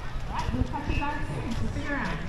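Indistinct voices of people talking among an outdoor crowd, with a few short knocks like steps.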